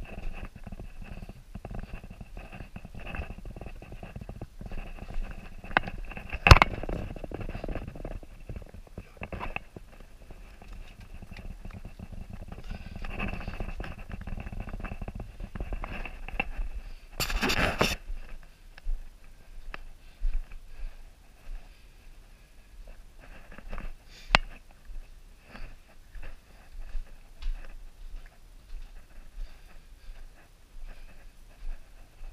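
Scuffing footsteps and knocks of a person moving over the rough rocky floor of a lava tube cave, with clothing and gear rustling; a sharp knock about six seconds in and a louder scraping rustle a little past halfway.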